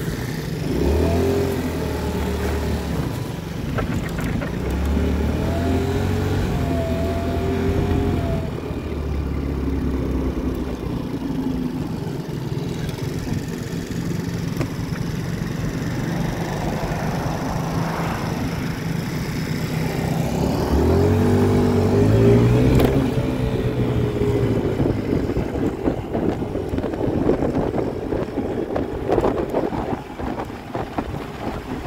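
Motor scooter engine running and revving, its pitch rising as it accelerates about 21 seconds in. Wind buffets the microphone near the end as the scooter rides along.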